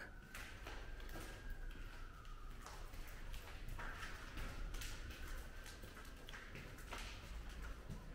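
Footsteps on a debris-strewn concrete floor, a step roughly every half second to a second.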